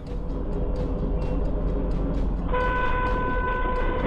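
Low engine and road rumble from a moving car, then about two and a half seconds in a car horn sounds on one steady note, held for about a second and a half.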